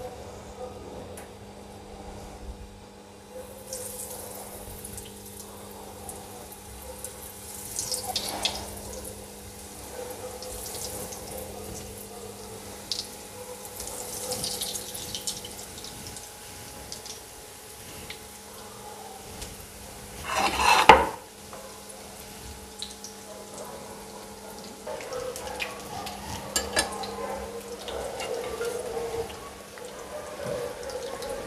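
Breaded chicken legs deep-frying in hot oil: a steady sizzle starts a few seconds in, with occasional light clicks and one brief louder noise about twenty seconds in, over a faint low steady hum.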